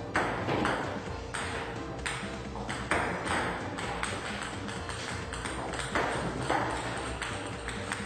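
Table tennis ball clicking off table and paddle in a series of irregular sharp taps, over background music.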